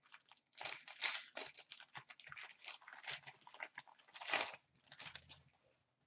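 Trading-card pack being opened and its cards handled: irregular crinkling and rustling of the wrapper and card stock, in quick small crackles that thin out near the end.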